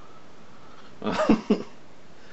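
A man's two short, sharp vocal bursts about a second in, cough-like: a longer one with a rising and falling pitch, then a quick second one.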